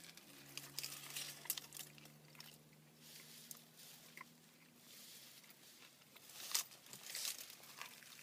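A person biting into and chewing a toasted ham and Swiss sandwich, with faint small crunches and clicks and a few louder bites near the end, over a faint steady low hum.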